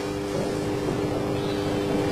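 Steady background hum with a few held tones.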